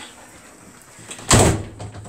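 A door bumping shut or against its frame: one loud thud about a second and a half in, with a low hum ringing on after it.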